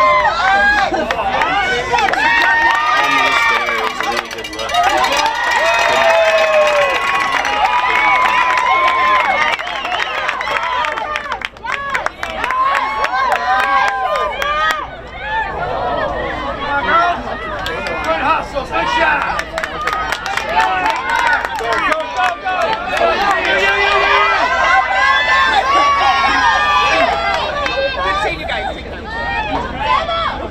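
Many voices shouting and calling over one another, fairly high-pitched: girls' lacrosse players on the field and the spectators at the sideline, with a few sharp clicks around the middle.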